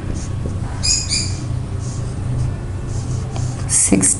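Marker writing on a whiteboard, giving short high squeaks about a second in and again near the end, over a steady low hum.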